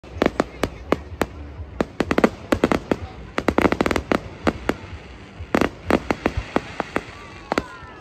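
Fireworks going off: a rapid, irregular string of sharp bangs and crackling reports, thickening into a dense rattle about three and a half seconds in, with falling whistles near the end.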